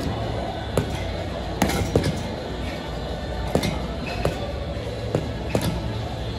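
Boxing gloves landing on a heavy bag in irregular punches, about eight sharp thuds, over background music.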